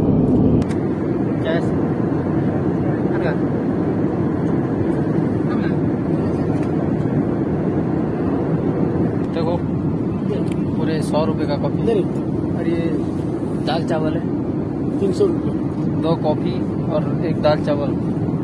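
Steady jet airliner cabin noise in cruise: a low, even rush of engines and airflow. Passengers' voices talk over it from about halfway through.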